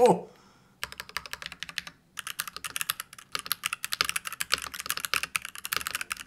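Fast typing on a Hanzo 002 mechanical keyboard with Daisy switches: a dense run of keystroke clicks that starts about a second in, with a brief break near two seconds.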